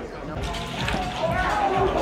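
Voices and crowd noise in a large hall, with a few low thuds mixed in.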